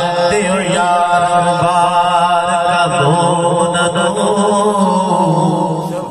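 A man's voice chanting a naat through a microphone and loudspeaker, holding long, wavering melodic notes. The chant breaks off just before the end.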